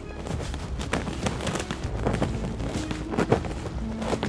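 Footsteps walking across grass: a string of soft, irregular steps.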